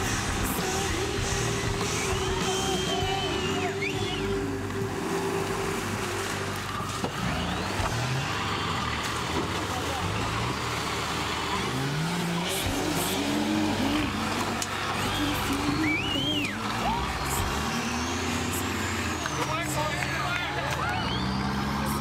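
Engines of modified off-road 4x4 competition vehicles revving hard, the pitch rising and falling in repeated bursts as the tyres claw up steep dirt banks, with voices shouting in the background.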